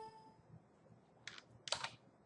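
Faint computer keyboard keystrokes: a short tap about a second and a quarter in, then a quick cluster of taps just before the end.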